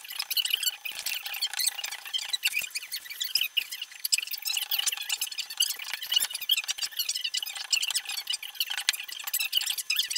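Wooden hand rammer packing foundry sand into a wooden moulding flask: a continuous gritty crunching and scraping of sand, with a few faint knocks.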